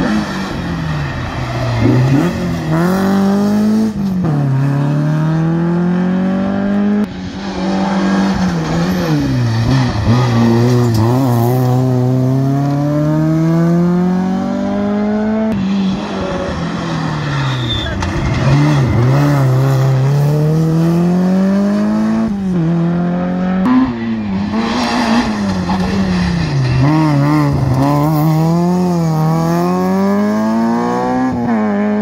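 Modern rally cars taking a tight hairpin one after another, about four in turn: each engine's revs fall as it brakes and shifts down into the bend, then climb again through the gears as it accelerates out.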